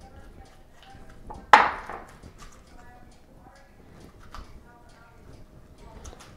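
Small knife scraping and cutting the choke out of an artichoke on a wooden cutting board: quiet scraping with light clicks, and one sharp, loud sound about a second and a half in.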